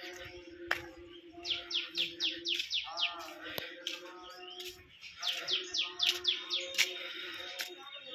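A bird calling in two runs of rapid, downward-sweeping chirps, about eight a second, over a steady low hum.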